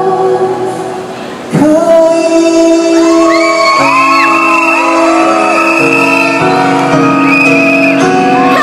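Live pop song with a male singer singing into a handheld microphone over musical accompaniment, heard in a large hall. The sound dips in the first second and a half, then a new chord comes in and the voice holds long notes over it.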